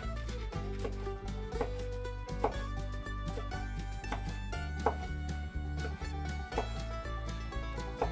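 Background music with a steady bass line, over which a kitchen knife taps sharply on a plastic cutting board about once a second as sausages are diced.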